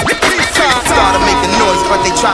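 Hip hop music with rapping over a beat; a held chord comes in about a second in.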